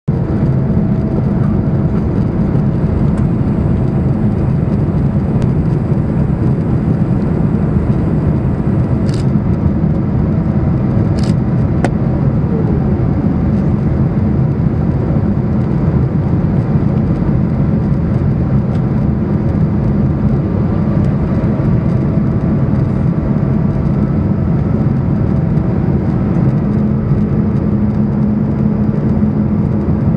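Steady cabin noise of a Boeing 777-200 on approach for landing with its flaps extended: a loud, even rush of engine and airflow noise with faint steady hums. Two brief faint clicks come about nine and eleven seconds in.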